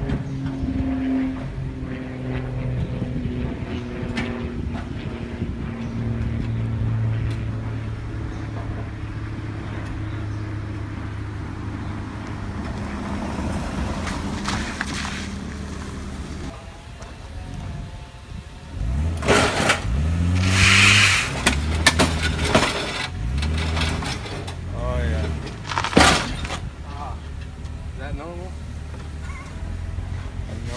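A car engine running steadily, then revving up and down several times while the car goes up onto a tow dolly's ramps, with scraping and a sharp clunk near the end of the climb.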